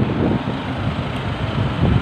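Steady road traffic noise from a city street, with some wind on the microphone.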